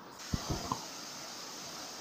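Steady hiss of creek water spilling over a low concrete weir, starting just after the beginning, with a few soft low thumps near the start.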